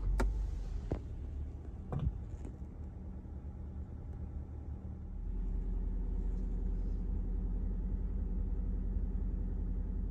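A Subaru Outback's boxer engine starts at the push of the start button and then idles steadily. This is an emergency start running straight on LPG through the BRC system. About five seconds in, the idle gets louder and steadier.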